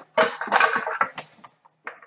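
Small decorated metal tea tin being handled and shaken: a quick run of light clicks and knocks, over within the first second and a half.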